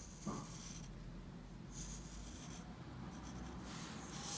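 Pencil scratching across thin white card, drawing lines in three or four short strokes of up to a second each.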